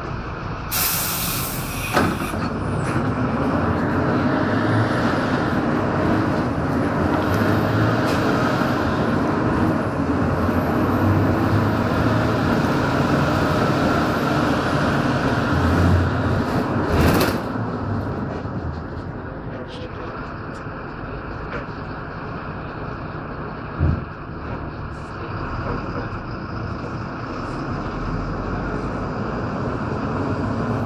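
Engine and road noise heard from inside a moving city bus, louder from a few seconds in until about 17 s and then easing off. There are two short loud hisses, near the start and about 17 s in, and a single thump about 24 s in.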